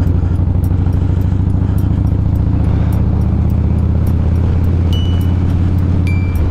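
Stage 2 2017 Harley-Davidson Dyna Street Bob's Twin Cam V-twin running at a steady cruise through TBR 2-into-1 pipes, the engine note holding even with no revving.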